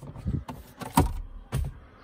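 Plastic glovebox of a Skoda Fabia being opened by hand: a few short clicks and knocks from the latch and lid, the loudest about a second in.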